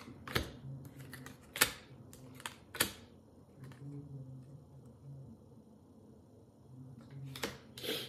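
A tarot deck being shuffled by hand: several sharp card snaps in the first three seconds, then quieter handling as a card is drawn and laid on the table near the end.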